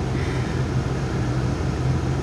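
Steady car cabin noise: a low, even engine hum under a soft hiss.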